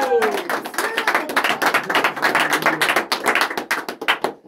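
A small group clapping their hands in quick, uneven applause, just as the chorus's last held sung note falls away.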